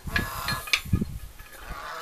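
Short knocks and thumps of things being handled on a wooden bench, several in the first second, with farm animals calling in the background.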